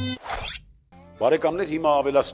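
A reedy folk woodwind music sting cuts off, followed by a short rising swoosh transition effect. A man starts speaking about a second later.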